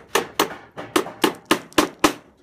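Claw hammer driving nails to fasten a rat guard strip along the bottom of a wall, about seven quick, even strikes at three to four a second, each with a short ring.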